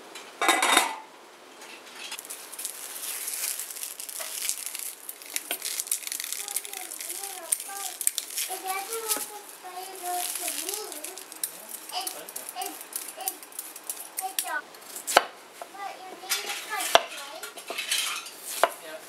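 A glass lid is set down on a stainless steel pot with a clatter about half a second in. Then comes a long spell of scratchy scraping as a vegetable peeler takes the skin off a Chinese yam on a wooden cutting board. A few sharp knocks follow near the end.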